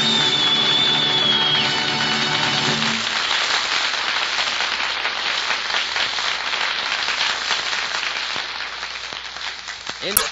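Closing music holding a final chord, which ends about three seconds in, followed by studio audience applause that carries on steadily.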